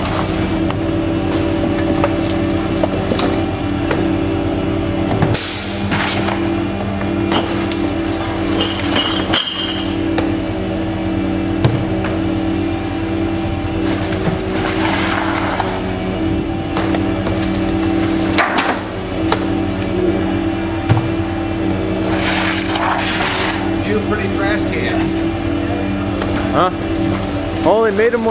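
Gasoline engine of a GMC C7500 rear-loader garbage truck running at a steady hum, with a few sharp thuds and clatters as trash bags and cans are thrown into the rear hopper.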